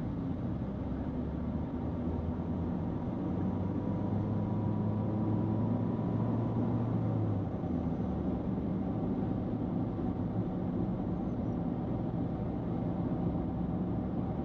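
Steady road and engine noise heard from inside a car's cabin while cruising on a highway, a low drone of tyres and engine. A deeper hum swells about four seconds in and falls away about halfway through.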